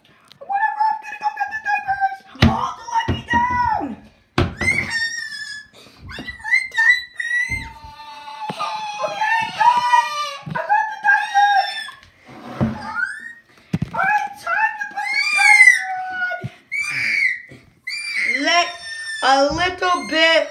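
A high-pitched voice screaming and squealing in bursts without clear words, with a couple of sharp knocks about two and four seconds in.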